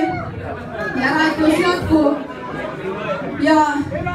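A woman singing into a microphone, with long held notes and gliding pitch, over a low murmur of audience chatter.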